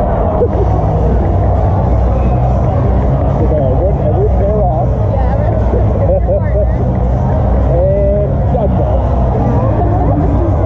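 Hockey arena crowd chatter with indistinct voices during a stoppage in play, over arena PA music and a low steady rumble.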